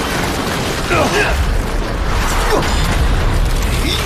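Sound effects for a mechanical armored suit in a sci-fi battle: mechanical clanking and whirring over a steady deep rumble, with a few falling swooping sounds.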